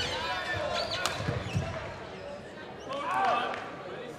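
Hall ambience in a large badminton hall between rallies: voices, with a few sharp knocks and short squeaky glides from play on the neighbouring courts.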